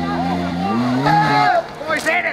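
Rally car engine running steadily, then revving up about halfway through, with people's voices calling out over it.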